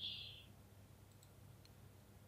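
Faint computer mouse clicks, two or three about a second in, as line points are placed, over near-silent room tone with a low steady hum. A brief soft hiss at the very start is the loudest sound.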